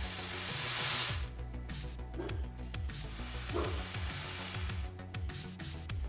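Homemade ocean drum of two paper plates stapled together, tilted so the loose filling rolls across the drumhead in a rushing hiss that imitates ocean waves. The loudest rush comes in about the first second, then it goes on more softly.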